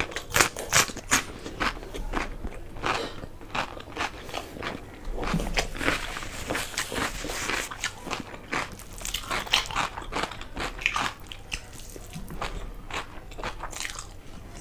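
Close-miked crunching and chewing of a raw cucumber slice, a rapid run of crisp crunches with a denser stretch about halfway.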